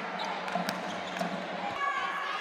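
Indoor volleyball play in a sports hall: a few sharp ball strikes echoing in the large room, over the hall's murmur of players' voices.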